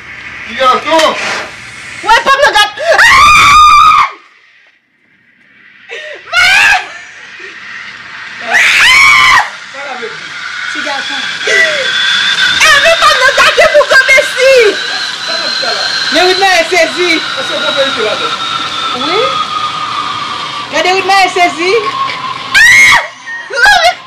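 Loud, excited screaming and shrieking from a man and a woman, in several long shouts and many short cries, as blue smoke pours from hand-held gender-reveal smoke cannons. From about ten seconds in, a steady hiss runs under the cries.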